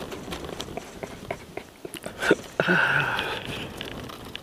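Close chewing and small mouth clicks of a man eating a sandwich roll. About two and a half seconds in comes a brief held hum-like sound lasting about a second, the loudest part.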